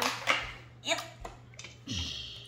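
Mostly speech: a child saying a short word ("yep"), with a faint low steady hum underneath.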